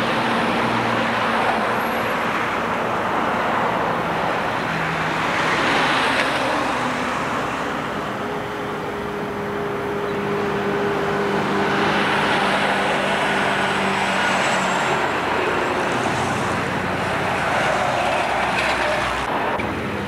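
Road traffic: motor vehicles passing on the road, a steady rush of tyre and engine noise with engine hum, swelling louder as vehicles go by about six and twelve seconds in.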